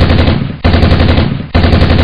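Machine-gun sound effect: rapid bursts of automatic fire, one under way at the start, a second about a third of the way in and a third near the end.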